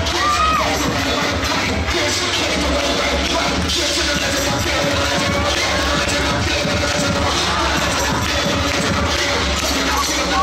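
Loud dance music with a steady bass, over a crowd cheering and shouting; a short whoop rises and falls about half a second in.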